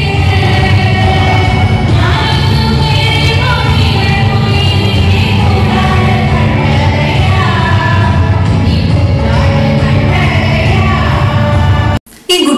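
A woman singing a song into a corded hand microphone through a PA system, loud and steady, with a heavy low boom under the voice.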